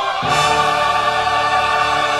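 Choral music: voices singing held chords over an accompaniment, moving to a new chord about a quarter of a second in.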